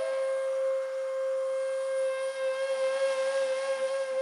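Background music: one long note held steady on a flute-like wind instrument.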